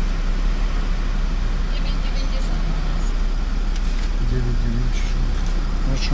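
Diesel car engine idling at a standstill, heard from inside the cabin with the driver's window open, over a steady low hum and traffic noise; a voice is heard briefly about four seconds in.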